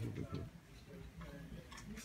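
Indistinct low voices, a little louder in the first half second, with a few light clicks.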